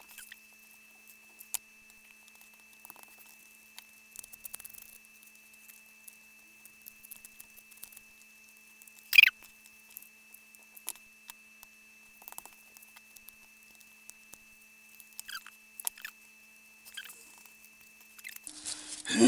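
Light rustling and scratching of burlap and cardboard being handled, with scattered small clicks and one sharper click about nine seconds in, over a faint steady high whine.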